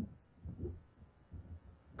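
A pause in a man's speech: low studio room hum with three soft low thuds.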